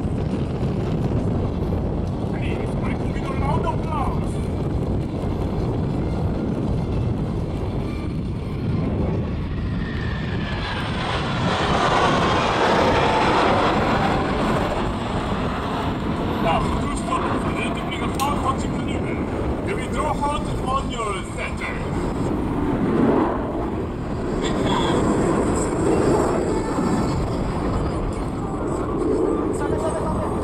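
Jet noise from a formation of T-50 jets, each driven by a single turbofan, flying an aerobatic display: a steady rush that swells to its loudest about a third of the way in as the formation passes, then eases back. Faint voices of onlookers can be heard underneath.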